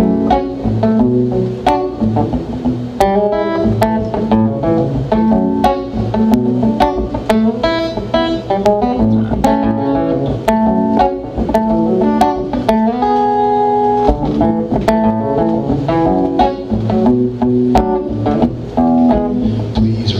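Acoustic guitar playing the song's opening groove, a rhythmic mix of picked notes and strums. About two-thirds of the way through, one chord rings out for about a second.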